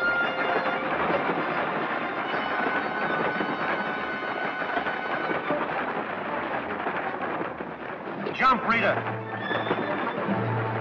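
A horse whinnies loudly once, about eight and a half seconds in, over dramatic orchestral film music and a steady rushing noise.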